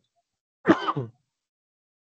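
A man clears his throat once, a short voiced sound a little over half a second in.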